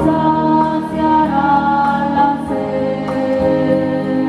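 A choir singing a church hymn in held, slowly changing notes.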